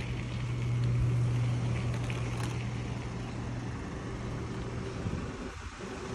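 Street noise heard from a moving bicycle: a steady low motor hum that stops about four seconds in, over an even rush of wind and road noise.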